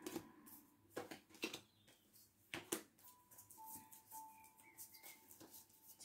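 Quiet handling of a tarot deck: a few soft taps and clicks as cards are gathered and turned upright, over a faint steady tone.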